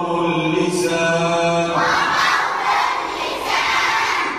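Group of boys reciting an Arabic creed text aloud in unison, a sing-song chant with long held notes, repeating it line by line after their teacher to memorise it.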